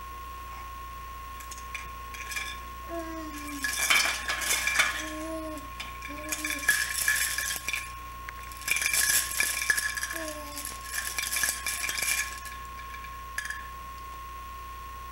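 Chain of plastic baby toy links clinking and rattling in four bursts as a baby shakes it, starting a few seconds in, with a few short baby coos between the bursts.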